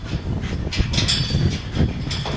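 Footsteps of a person and a dog coming down an open steel staircase, irregular metallic clanks and thumps, with a few sharper clatters about halfway through over a low rumble.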